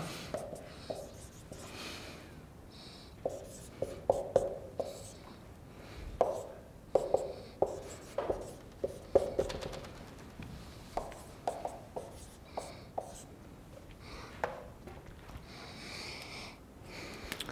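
Dry-erase marker squeaking and scratching on a whiteboard as an equation is written out, in many short, irregular strokes.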